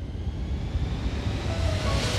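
A rising whoosh of noise over a low rumble, building up in a gap in the music, with a few musical notes coming back in near the end.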